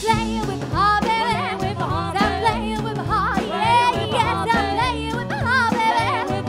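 Live rockabilly band playing: upright double bass walking in steady notes, drums and electric guitar, with a high melody line full of slides and vibrato on top.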